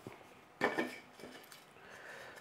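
Faint clinks and light knocks of hardware being handled on a workbench: a steel rod with a 608 bearing and 3D-printed plastic parts being fitted into a plastic tube. A short cluster of clatter comes about half a second in and a smaller one just after a second.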